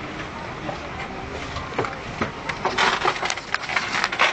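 Crackling and knocking noises over the murmur of an airliner cabin, denser and louder about three seconds in.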